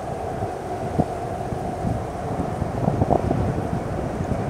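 Wind buffeting the microphone outdoors: a steady low rumble broken by brief gusty pops.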